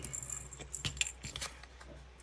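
Hands handling a playing card and paper on a cutting mat while picking up a glue bottle: soft rustling with a few light clicks and taps.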